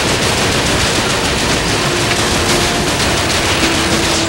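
Sustained rapid gunfire: a dense, unbroken rattle of shots.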